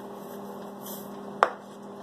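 Salt shaken from a shaker over a pan of vegetables, a faint brief hiss, then a single sharp click about one and a half seconds in. A steady low electrical hum runs underneath.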